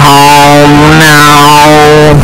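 A deliberately blown-out, clipped sustained tone at full loudness, held as two long notes with a slight break about halfway, with harsh distortion smeared across the whole range.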